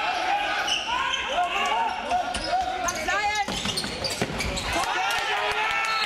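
Handball match in a sports hall: players and spectators shouting over one another while the ball bounces on the wooden court, with sharp knocks near the end.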